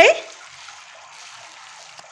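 A steady, even hiss with no distinct events, just after the last syllable of a spoken word.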